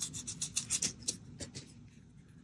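Rustling, rubbing handling noise as a bookmark is handled over a book on a bedsheet: a quick string of short scratchy strokes that fades out about a second and a half in.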